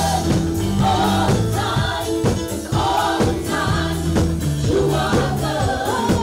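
Gospel worship team singing together in harmony into microphones over a live band, with sustained bass and keyboard tones and a steady drum beat.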